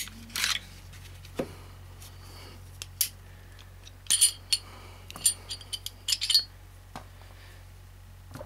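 Scattered clicks and small metallic clinks of a Glock 26 pistol being field-stripped, as the slide comes off the frame and the barrel and recoil spring are taken out and set down. The busiest run of clinks, some with a short ring, comes around the middle.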